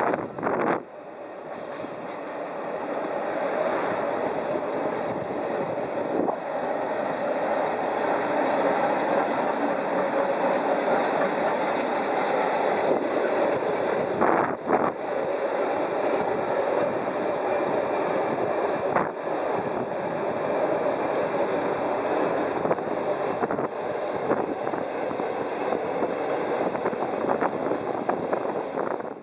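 Container freight train rolling past, a steady rumble of wagon wheels on rails that builds over the first few seconds and then holds, with a few brief knocks.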